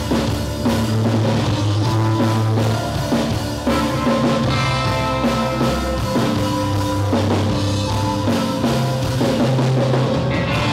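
Live rock band playing: drum kit, electric guitars and keyboard, loud and steady throughout.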